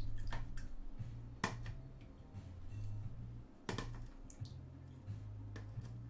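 A few scattered sharp clicks and light knocks, two of them louder, about a second and a half and nearly four seconds in, as things are handled on a tabletop, over a low hum that comes and goes.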